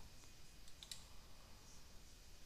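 A few faint clicks of a computer keyboard, bunched a little under a second in, over near-silent room tone.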